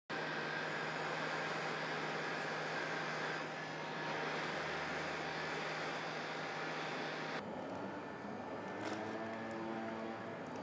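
Heat gun blowing hot air onto plastic: a steady rush of air over a low motor hum. About seven seconds in the sound changes abruptly to a duller, lower hum.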